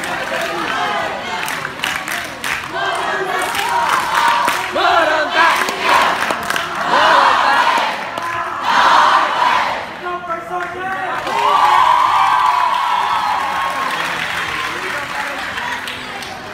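A seated crowd of cadets cheering and shouting, rising in several loud swells and dying down near the end.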